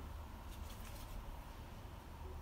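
Quiet room with a steady low hum and faint soft rustling as a hand smooths a folded sheet of yufka pastry on a countertop.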